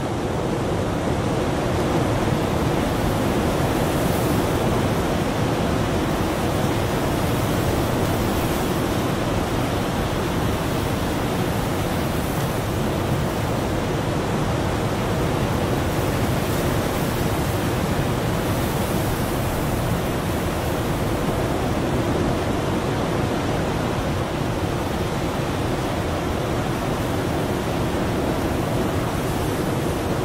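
Steady rushing noise of wind and sea surf breaking on rocks, unbroken for the whole stretch.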